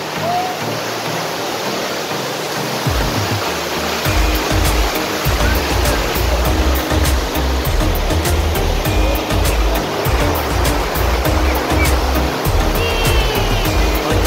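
Rushing water of a waterfall pouring over a rock shelf, a steady noise. Background music with a heavy bass beat and regular ticks comes in about three to four seconds in and plays over it.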